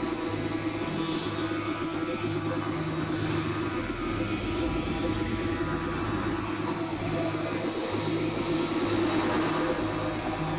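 Experimental electronic drone music: a dense, noisy synthesizer texture with a steady mid-pitched hum, over low tones that step between a few pitches about once a second.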